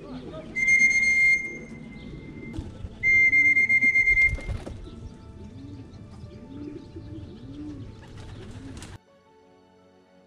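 A shrill, steady whistle sounds twice in the first few seconds, the second time with a warble. It is followed by pigeons cooing in low, repeated calls, about one every three-quarters of a second. Soft background music takes over in the last second.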